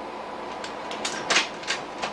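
Slide projector clicking through a slide change: a run of sharp mechanical clicks, several a second, over a steady hiss and faint hum.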